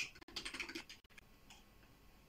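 Faint keystrokes on a computer keyboard, a few quick taps in the first second or so.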